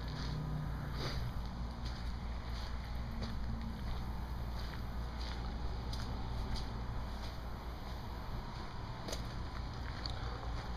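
Quiet outdoor background: a steady low rumble with a faint even hiss and a few scattered faint clicks, with no distinct source standing out.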